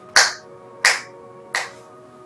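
Background film music: faint held tones under three sharp, snap-like percussion hits, evenly spaced about 0.7 s apart.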